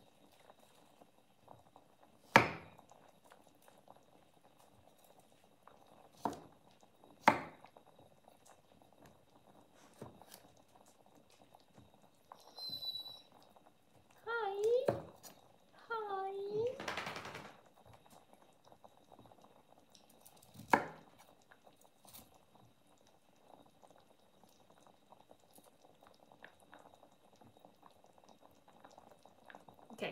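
A kitchen knife cutting broccoli on a wooden chopping board: a few sharp knocks spaced out by long quiet gaps. Midway there are two short voice-like sounds and a brief rustle.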